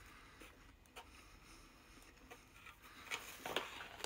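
A man chewing a mouthful of food in a quiet room, with a few light clicks near the end.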